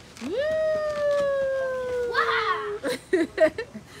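A long, high cheer of "woooo" that swoops up and then holds, slowly sinking, for about two and a half seconds. It runs into a "wow" and laughter, and a few short sharp clicks follow near the end.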